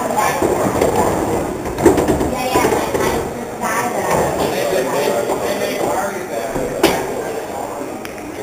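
Steady background chatter of many voices in a bar room, with two sharp clicks, about two seconds in and near the end, from pool balls being struck on the table.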